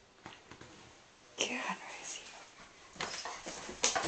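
Short whispered phrases from a person, twice: about a second and a half in and again near the end.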